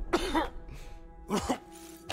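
Two short, pained grunts from a man, about a second apart, over soft background music with held notes.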